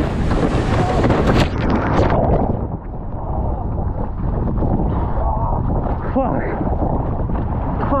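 A windsurfing crash heard through an action camera. It opens with a loud rush of wind and splashing spray as the rider goes down into the sea, about two seconds long. After that comes duller, muffled water sloshing and gurgling around the wet camera as he swims among the boards.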